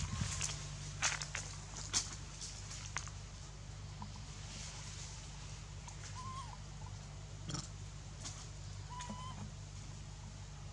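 Quiet outdoor ambience over a steady low hum. Scattered sharp clicks and rustles come in the first three seconds and once more past the middle, and two short chirping calls sound, one about six seconds in and one near the end.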